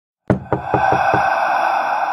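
Five quick knocks, the first the loudest and the rest about a fifth of a second apart, starting over a sustained eerie tone from a horror-film soundtrack.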